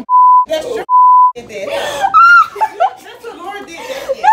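Two censor bleeps in quick succession, each a loud, steady, high beep about half a second long, dubbed in place of spoken words. Voices talk between the bleeps and after them.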